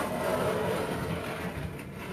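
Wooden drawer built into a stair step sliding shut on its wooden runners, a steady wood-on-wood rubbing that fades near the end.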